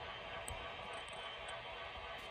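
Faint background room noise with a soft tick about half a second in and another a second later.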